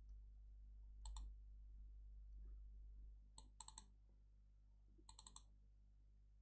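Soft clicking of a computer mouse: one click about a second in, then two quick runs of about four clicks each, over a steady low room hum.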